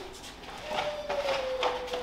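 Grocery packaging being handled on a kitchen counter: a few light clicks, knocks and rustles, with a thin steady tone that slowly sinks in pitch underneath.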